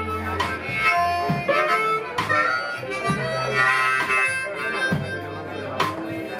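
Live blues band: amplified harmonica played into a cupped vocal microphone carries the lead with sustained, bending notes, over electric bass, guitar and drums with sharp drum hits every couple of seconds.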